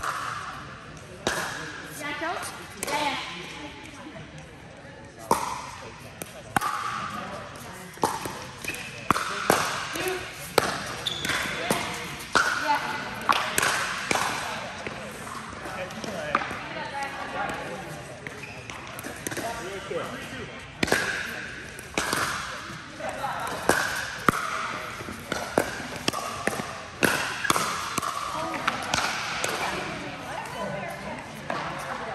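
Pickleball paddles striking a plastic ball and the ball bouncing on a hard indoor court: sharp pops at irregular intervals, several in quick succession in the middle stretch, ringing in a large hall.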